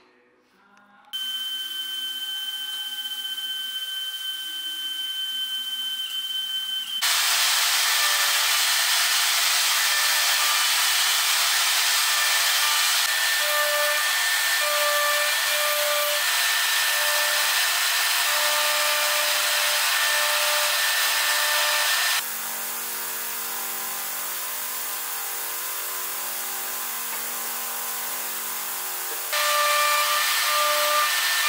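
CNC router spindle starting up with a steady high whine, then milling into an end-grain hardwood block with a loud, steady hiss. About 22 seconds in the sound turns abruptly quieter and lower, and the louder cutting returns near the end.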